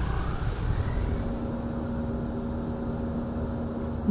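A motor running steadily: a low rumble, with a steady hum that sets in about a second in.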